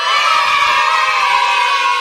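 A group of children cheering together in one long, held 'yay'.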